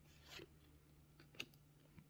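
Faint swish of a baseball card being slid off the top of a hand-held stack of cards, with a short light click of card stock about halfway through.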